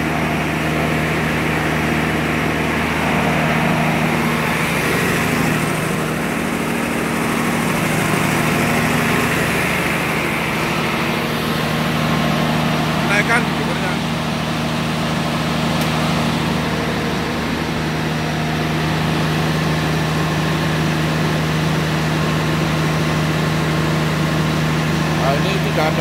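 MWM diesel generator-set engine running at a steady speed, with no audible change in note. A couple of brief light clicks come about halfway through.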